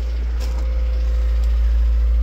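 A running engine idling, heard as a steady low rumble, with a faint thin hum joining about half a second in.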